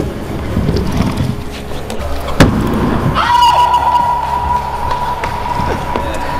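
Stunt scooter wheels rolling on plywood skatepark ramps, with one sharp loud clack about two and a half seconds in. Background music plays throughout, and a steady high tone comes in about three seconds in and holds.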